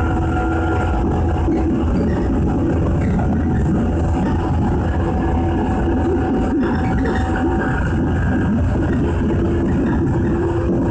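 Train running along the line, heard from inside the passenger car: a steady rumble of wheels and running gear with a faint steady hum over it that fades in the middle and comes back near the end.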